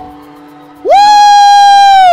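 A loud, high voice holding one long cry of steady pitch, sliding up into it a little under a second in and dropping away at the end, amplified through a PA, over a faint steady drone.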